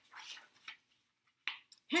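Soft rustle of a picture-book page being turned, with a small click, then a short breath just before reading resumes.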